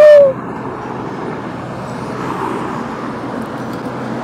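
Steady outdoor background noise, a low hum under an even hiss, after a brief vocal exclamation at the very start.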